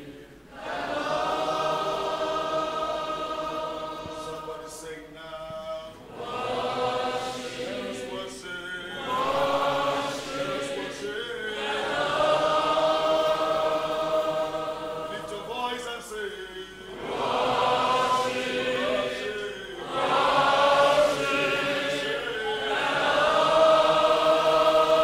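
Church congregation singing a slow worship chorus together, many voices in held phrases of a few seconds with short pauses between them.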